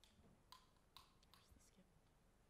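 Near silence with a faint, distant whispered word and a few faint clicks.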